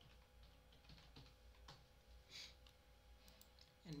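A few faint, scattered computer keyboard keystrokes and mouse clicks over a faint steady hum.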